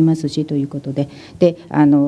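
Speech only: an interpreter speaking Japanese.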